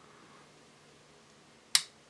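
A single sharp click from the trigger of a BUL Armory SAS II Ultralight double-stack 1911 pistol as it is let forward to its reset, a short reset by the reviewer's account. The click comes near the end, after a quiet stretch.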